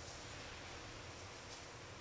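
Faint steady hiss of room tone, with only a faint soft rustle about one and a half seconds in; no impact of the nail is heard.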